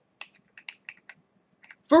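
A quick, irregular run of light clicks, about eight in the first second, then two more shortly before the end.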